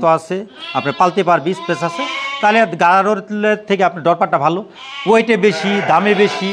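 Sheep bleating in the pen, with a man talking over them.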